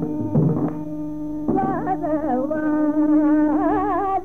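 Carnatic classical music in raga Kambhoji: a melodic line with wide, wavering pitch ornaments over a steady drone, with a few drum strokes.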